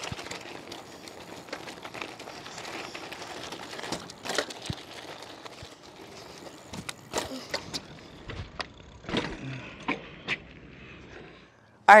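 Outdoor riding noise from a kids' electric bike: a steady hiss with scattered small clicks and crunches from the tyres on gravel and pavement. A brief faint voice comes in about three quarters of the way through.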